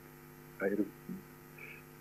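Steady electrical mains hum in the room's audio system during a pause in the lecture, with a brief vocal sound from the lecturer about half a second in.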